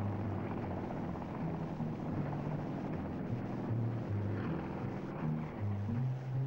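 Light helicopter in flight, its rotor and engine running steadily.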